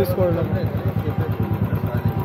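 Royal Enfield Classic 350's single-cylinder engine idling with a fast, even beat.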